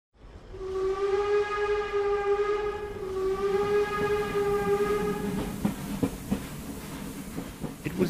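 Steam train whistle sounding two long, steady blasts, the second following a brief break about three seconds in. It then gives way, about five and a half seconds in, to the low rumble and scattered clacks of a train rolling on the rails.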